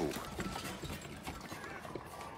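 Horses walking at a slow pace, their hooves clip-clopping faintly.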